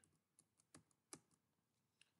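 A few faint computer keyboard key clicks, about three spread over two seconds, over near silence.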